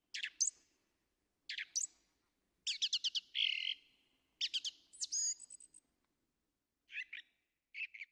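Small songbirds chirping in short, high calls with pauses between them, including a quick run of four notes about three seconds in.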